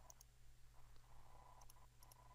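Near silence with a faint steady hum, broken by a few faint computer mouse clicks: two just after the start and another near the end.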